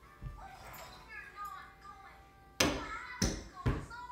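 Tennis ball bouncing on a hard floor: three thumps in the second half, each coming sooner than the last.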